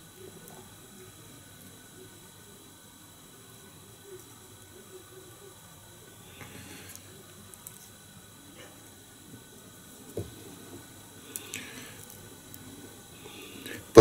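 Faint handling sounds from fly tying at the vise: soft rustles and scrapes of thread and feather material being adjusted, with a few light clicks.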